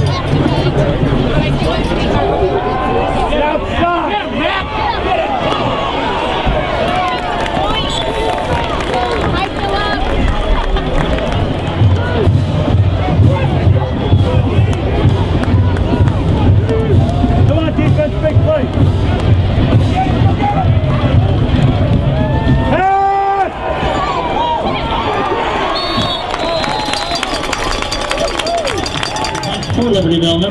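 Crowd of spectators at a football game: many voices talking and shouting over music, with a steady low hum underneath.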